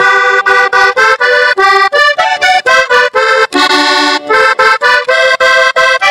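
Vallenato button accordion played alone between sung verses: a quick melody of short, detached notes, about three or four a second, with one longer held chord a little past the middle.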